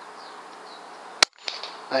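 A single air rifle shot about a second in: one short, sharp crack over a steady low hiss.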